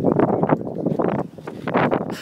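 Wind buffeting the phone's microphone in uneven gusts, a loud rumbling noise.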